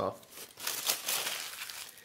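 Aluminium foil burger wrapper being crumpled up in the hands: a dense, crackly crinkling that starts about half a second in.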